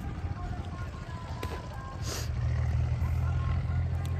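Low engine rumble of an approaching tractor, growing louder about halfway through, with a brief hiss about two seconds in.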